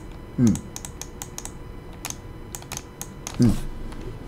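Irregular light clicking of a computer keyboard being typed on, about a dozen clicks. A man murmurs a short 'um' twice, near the start and near the end.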